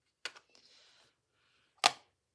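Craft-desk handling: a light tap, a faint rustle, then one sharp click near the end as a plastic ink pad case is picked up.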